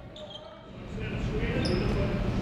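Basketball practice in a large arena gym: a ball bouncing on the hardwood court amid players' voices and echoing hall noise, growing louder about a second in, with a brief high sneaker squeak near the end.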